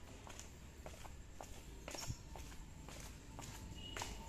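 Faint footsteps going down concrete stairs, a string of short, unevenly spaced steps.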